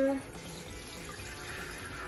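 Water poured from a glass measuring cup through a stainless-steel mesh colander into a pot, a steady splashing pour.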